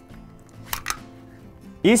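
Two light, sharp clicks a fraction of a second apart, under a second in, from the parts of a WE P08 Luger gas-blowback airsoft pistol as its barrel and upper assembly are slid off the aluminium-alloy frame during field-stripping. Quiet background music plays underneath.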